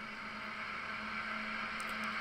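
Metal lathe running while a large twist drill bores out the centre of a spinning mild-steel hub: a steady motor hum with cutting noise, slowly growing louder.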